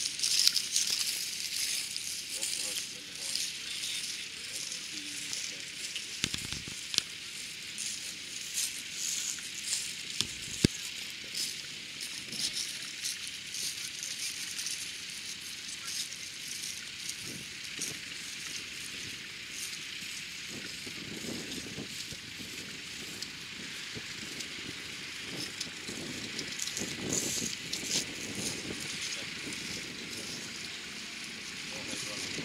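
A pair of horses pulling a plough: harness chains and plough rattle and click over a steady high hiss, with onlookers talking at intervals.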